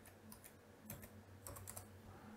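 Faint computer keyboard typing: a few scattered soft key clicks, with a small cluster about one and a half seconds in.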